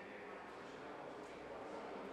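Faint, indistinct murmur of voices over a steady background hiss, with no words made out.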